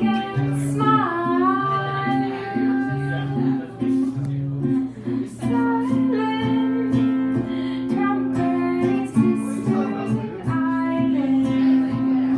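A singer accompanying themselves on acoustic guitar, singing a melody over plucked and strummed chords.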